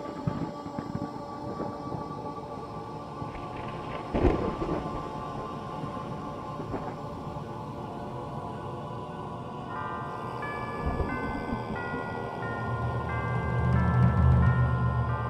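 Dark, ominous film score of sustained tones, with a sudden deep boom about four seconds in. A high repeating note figure enters about ten seconds in, and a low rumble swells near the end.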